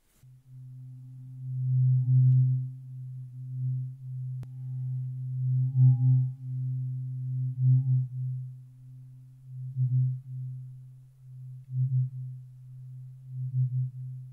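Low-pitched tuning fork ringing with a steady pure hum and a faint higher overtone, its loudness swelling and fading again and again as it moves close to the microphone. The tone breaks off for a moment at the very start, then rings on.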